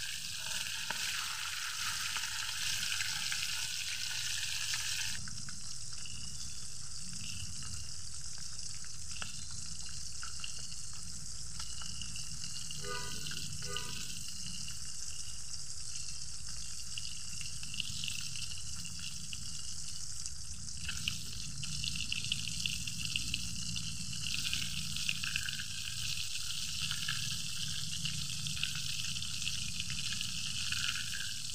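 Fish frying in hot oil in a wok, a steady sizzle throughout. From about two-thirds of the way through, light sharp taps of a knife cutting on a banana leaf are heard over it.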